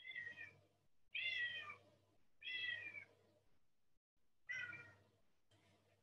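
Cats meowing: four drawn-out meows, each falling in pitch, spaced a second or two apart.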